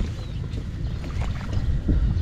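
Wind buffeting the microphone in a steady low rumble, with hands sloshing and squelching in shallow muddy water.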